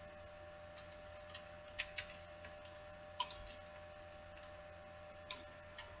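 A few faint, scattered computer keyboard clicks as text is typed, over a steady low electrical hum.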